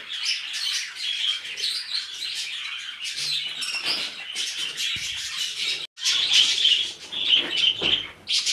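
A flock of budgerigars chattering, many birds chirping and warbling at once in a busy, continuous stream.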